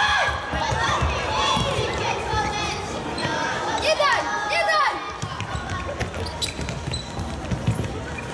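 A futsal ball being kicked and bouncing on a hard sports-hall floor, the knocks echoing and coming thickest in the second half, with children's shouts rising and falling over them.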